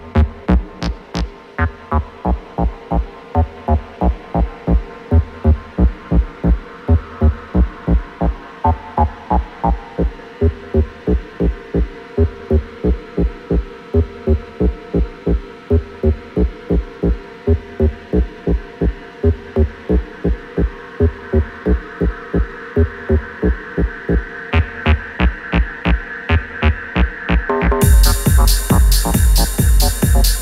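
Techno track in a stripped-back section: a steady kick drum at about two beats a second under held synth tones, with the high end filtered out. A brighter synth swells in over the last few seconds.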